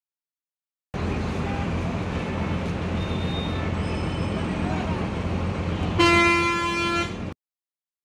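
Busy street traffic: a steady low engine hum under general street noise and voices. Near the end a vehicle horn blasts loudly for about a second, then the sound cuts off suddenly.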